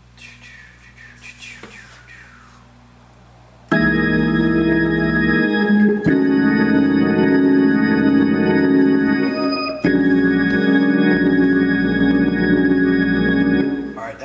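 Hammond organ playing three held chords over a bass line, each about four seconds long, starting about four seconds in after a faint hum. They are a six–two–five preaching-chord progression in E-flat: C in the bass with E♭–A♭–B♭–E♭, then F with E♭–A♭–A–D♭, then B♭ with D–G♭–A♭–D♭.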